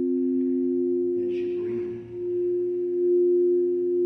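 Crystal singing bowls played with mallets, two bowls sounding steady, pure ringing tones together. About halfway, the lower tone drops away and the higher one carries on, louder.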